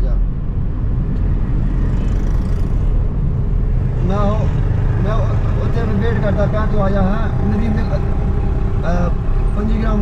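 Steady engine and road rumble inside a moving car's cabin. From about four seconds in, a man talks on a mobile phone over it.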